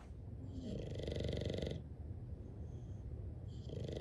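English bulldog snoring in its sleep: two long snores, each over a second, the second starting about three and a half seconds in.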